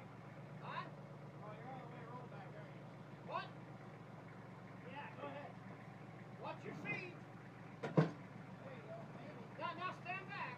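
Tractor engine idling steadily, with a single sharp clank about eight seconds in as the plow is handled on the trailer.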